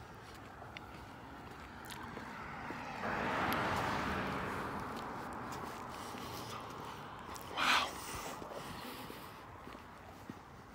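A person chewing a crunchy peanut-butter candy bar while walking, with small crunching clicks throughout. A rush of noise comes in suddenly about three seconds in and fades slowly over several seconds, and a short burst of noise stands out near the end.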